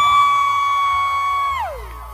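A single sustained high musical note that swoops up into pitch, holds steady for about a second and a half, then slides down and dies away while the rest of the band is silent. A low steady hum remains after it.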